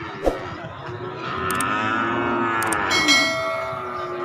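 A year-old calf mooing once in a long call that rises and falls, starting about a second in. Near the end a sharp click and a ringing bell-like chime come in suddenly: the subscribe-button sound effect.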